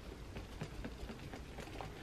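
Faint, quick swishes and light fluttering of a handheld folding fan being waved back and forth close to the face.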